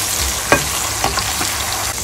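Beans and onions sizzling in hot oil in a non-stick pan while being stirred with a metal slotted spatula, with a sharp tap about half a second in and a few lighter ticks about a second in.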